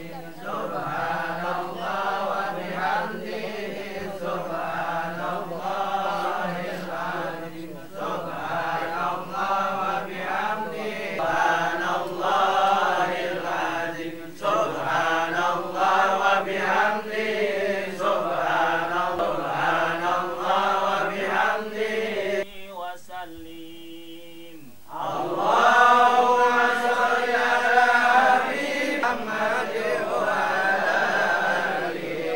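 A group of men chanting Islamic prayers together in unison, a steady collective recitation. About three-quarters of the way through it briefly drops quieter, then resumes louder.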